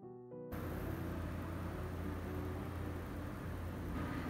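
Soft piano background music ends about half a second in. It gives way to a steady low hum and hiss of room noise.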